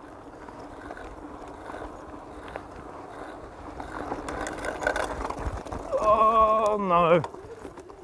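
Mountain e-bike climbing a steep gravel track: a steady rush of wind and tyre noise with small crunches and ticks from the gravel. About six seconds in, a person's drawn-out voiced sound lasts about a second, wavering and falling at the end.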